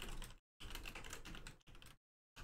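Computer keyboard typing: faint, rapid keystrokes in short runs as terminal commands are entered.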